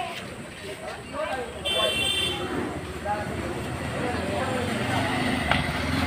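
Several young men talking over one another in the street, with a brief high-pitched toot about two seconds in. A low steady hum grows louder near the end.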